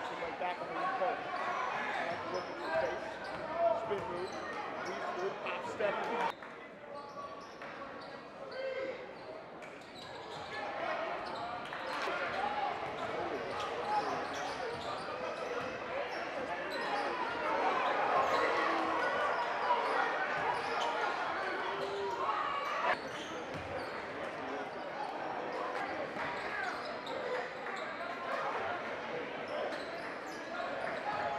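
Live gym sound from a basketball game: crowd chatter filling a large hall with a basketball dribbling on the hardwood. The background level changes abruptly a few times.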